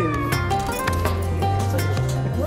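Background music: a song with a steady bass line, regular percussion and a melody line that slides down in pitch near the start.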